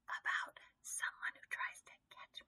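A woman whispering in several short, breathy phrases.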